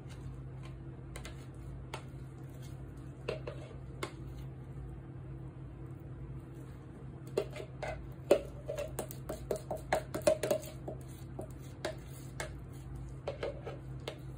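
Metal spoon and kitchen dishes clinking and tapping together: a few scattered clicks, then a quick run of clinks in the middle, over a steady low hum.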